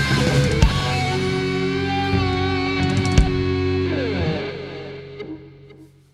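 Rock band playing the last bars of a song with electric guitar, bass guitar and drums: a final chord is held and rings, a downward slide comes in about four seconds in, then the sound dies away to near silence.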